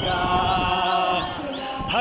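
A crowd singing together in chorus, many voices holding long notes.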